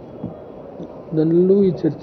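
A man speaking into press-conference microphones, starting about a second in after a short pause with faint background noise.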